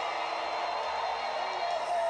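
Studio audience applauding, an even, steady clatter of clapping with a faint voice in it near the end.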